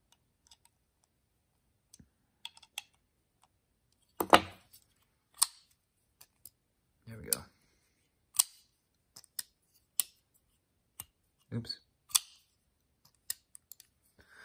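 Spyderco Paramilitary 2 folding knife being worked by hand. A few faint ticks come first, then from about four seconds in its blade is opened and closed again and again, making a series of sharp metallic clicks about a second apart. This tests the action after the pivot and body screws were retightened to centre the blade.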